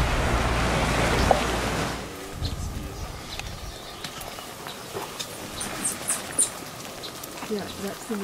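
Wind rumbling on the microphone for about two seconds, then a sudden cut to a quieter scene with scattered short, high bird chirps, bunched together about six seconds in.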